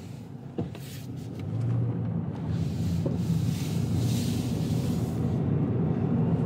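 Inside-cabin sound of a 2024 Subaru Impreza RS driving: the 2.5-litre flat-four engine's low hum with tyre and road noise, growing louder from about a second in as the car gathers speed. A short click just after the start.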